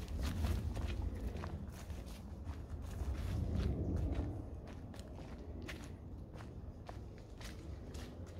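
Footsteps of a person walking along an overgrown dirt path, with irregular small clicks and crackles underfoot over a low rumble.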